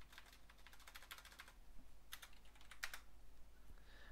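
Faint typing on a computer keyboard: a quick run of keystrokes through the first second and a half, then a few more key presses around two and three seconds in.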